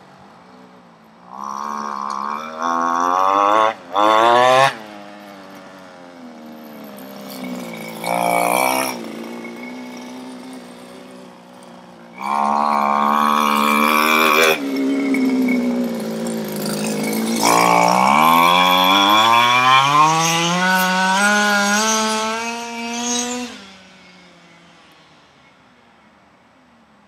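Small two-stroke engine of a 31cc GoPed revving in several bursts from a low idle, the last one a long steady climb in pitch before it dies away near the end. It has a slight bog at the low end.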